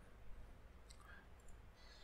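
Near silence with a few faint computer clicks about a second in, from a keyboard shortcut or mouse click that saves and runs the program.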